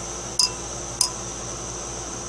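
Glass stirring rod clinking against the inside of a glass beaker while stirring an acid solution, two light ringing clinks about half a second apart.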